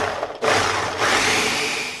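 Ninja blender motor running at full speed, chopping and churning a thick batch of chickpea hummus. It starts abruptly, drops briefly about half a second in, then runs on steadily.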